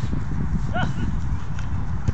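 Outdoor five-a-side football: a steady low rumble over the pitch, with one short, high shout from a player just under a second in.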